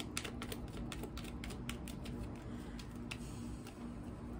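Tarot cards handled in the hands, a quick run of light paper clicks and snaps as the deck is worked through. The clicks come fast at first, thin out, and stop about three seconds in.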